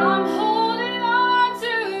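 A woman singing a slow, drawn-out line over an upright piano chord that is struck at the start and held.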